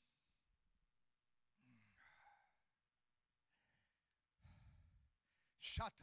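Near silence with faint breath sounds picked up by a handheld microphone, then a short, loud sigh into it near the end.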